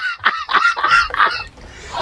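A man laughing hard in short, high-pitched bursts, about four a second, fading into a breathy wheeze near the end.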